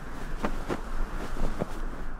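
Sound effect of rushing wind in flight: a steady rush of air with a low rumble, broken by several sharp buffeting knocks.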